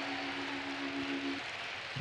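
A single held musical note, a steady low tone that stops about three-quarters of the way through, over a steady hiss.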